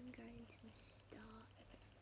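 A woman speaking softly, close to a whisper, in two short phrases, over a low steady electrical hum.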